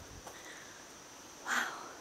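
Quiet woodland ambience with a faint, steady high-pitched hum, and a short throat-clear about a second and a half in.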